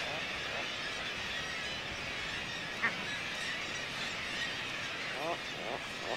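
Puffin colony ambience: a steady background hiss with seabirds calling now and then, the calls growing more frequent near the end, and a single sharp tap about three seconds in.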